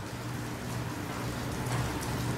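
A steady hiss over a low, even hum.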